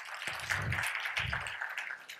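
Audience applauding in a hall, a dense patter of many hands thinning out near the end, with two low thuds about half a second and a second and a quarter in.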